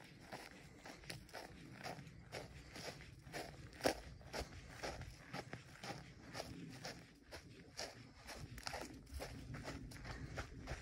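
Footsteps on dry grass and pine needles, about two steps a second, with one louder step about four seconds in.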